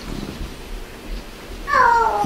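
Quiet room hush in a pause of a talk. Near the end comes a short, high-pitched cry that falls in pitch.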